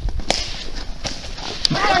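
Footsteps and scattered sharp clicks on a snowy trail, then, near the end, several voices yelling with their pitch swooping up and down.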